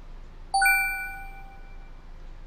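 A bright electronic chime sound effect rings once about half a second in, a clear bell-like ding with high overtones that fades away over a second or so.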